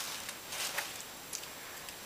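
Faint, brief rustles of a folded paper slip being handled, with a few soft ticks.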